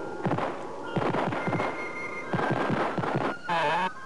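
Cartoon soundtrack: music with held tones under three clusters of popping, crackling bursts, each dropping quickly in pitch, a rocket sound effect for the soup-can rocket flying through space. Near the end comes a short wavering tone.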